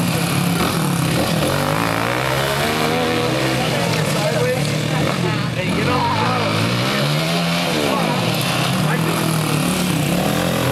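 Two dirt bike engines revving up and backing off again and again as the bikes race around a tight dirt oval, their pitch rising and falling with each straight and corner.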